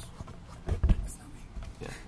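A man's brief muttered words ("me", "yeah") in a quiet car cabin, with a couple of low thumps about three quarters of a second in; no power-window motor stands out.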